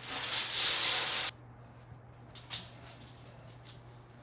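Aluminum foil being pulled off the roll out of its box, one long rustling pull of about a second and a quarter that stops suddenly. A few faint crinkles and taps follow as the sheet is handled on the counter.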